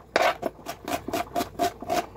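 Knife slicing small onions on a cutting board: rapid strokes, about four a second, each a short scrape ending in a knock of the blade on the board.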